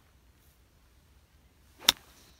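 A 6-iron striking a golf ball off fairway turf: a short swish of the club coming down, then one sharp click of impact near the end.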